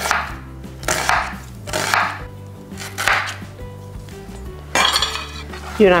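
Chef's knife slicing through an onion onto a plastic cutting board, one stroke roughly every second, about five strokes, cutting it into julienne strips.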